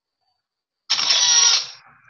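Camera-capture sound effect from the Mercury electronic magnifier tablet's speaker as it photographs a page for text-to-speech, a single sudden sound about a second in, lasting under a second before fading.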